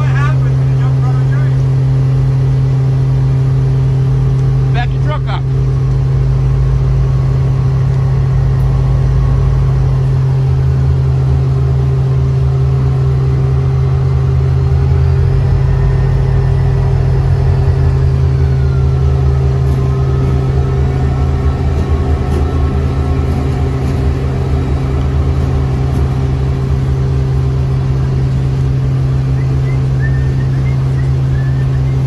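CSX freight train's diesel locomotives approaching and rumbling past at close range, followed by freight cars rolling by, over a steady low hum throughout.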